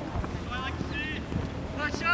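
Two short distant shouts from the soccer pitch, about half a second and a second in, over steady wind rumble on the microphone.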